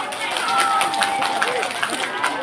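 Scattered hand claps from an audience, several a second and uneven, with voices calling out among them.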